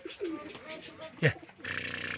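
Domestic pigeons cooing softly, with a short human call about a second in and a rough rasping noise near the end.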